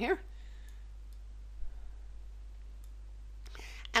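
A few short clicks from a computer mouse, a small cluster about a second and a half in, over a steady low electrical hum.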